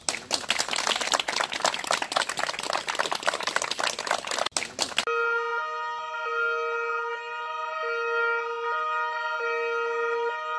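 Crowd clapping for about five seconds, cut off abruptly, followed by the two-tone sirens of several police cars sounding steadily, their pitch switching back and forth between two notes about once a second.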